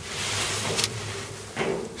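Rustling and scraping as a gloved hand works inside a clothes dryer's blower housing, with a sharp click just under a second in.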